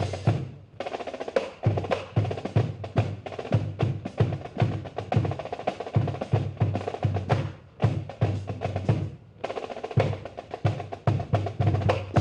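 Marine band drum section playing a marching cadence: rolling snare drums over a steady bass drum beat.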